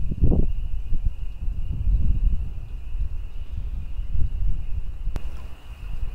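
Wind buffeting the microphone in an uneven low rumble, with a thin steady high whine underneath and one sharp click about five seconds in.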